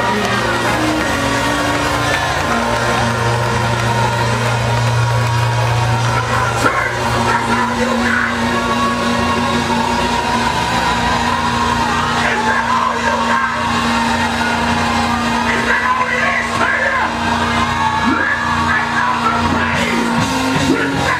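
Live gospel band music in a church, with long held low chords, while the congregation shouts and whoops over it.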